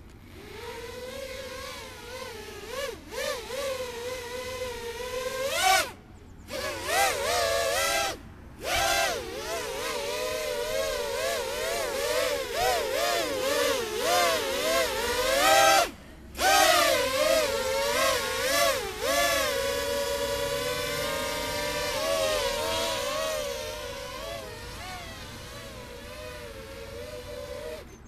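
Mini X8 180 drone's eight small brushless motors (DYS 1306 3100 kV) and propellers buzzing in flight. The pitch wavers up and down with the throttle. The sound drops out briefly about six, eight and sixteen seconds in, steadies in the last few seconds and stops at the end.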